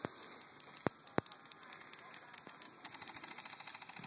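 Two sharp pops from skirmish game guns about a third of a second apart, then a faint, fast patter of shots near the end.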